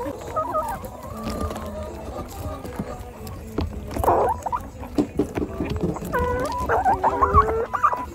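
Laying hens clucking while they peck chopped banana stem and pellet feed from a trough, their beaks tapping in quick, irregular clicks. The clucks come loudest and thickest from about six seconds in.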